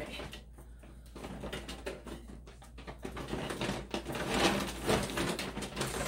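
Rustling and crinkling of a plastic shopping tote and the packaged items inside it as they are rummaged through, in uneven bursts that grow louder in the second half.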